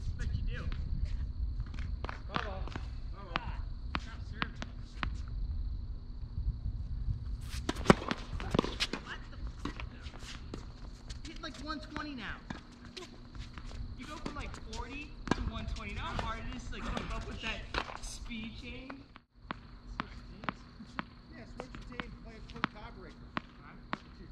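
Tennis balls struck by rackets and bouncing on a hard court during rallies, a run of sharp pops with the loudest hit about eight seconds in, and indistinct voices at times.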